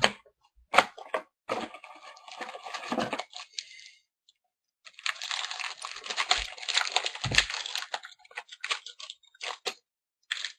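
Trading-card pack wrapper crinkling and tearing while hockey cards are handled, with sharp clicks about a second in and a longer spell of crackling from about five to eight seconds in.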